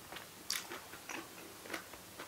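Close-up chewing of crisp fresh salad greens: a few short, irregular crunches, the loudest about half a second in.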